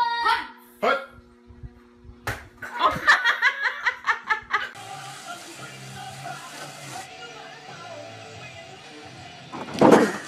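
Excited voices and laughter over background music, with a single sharp smack about two seconds in and a loud outburst near the end.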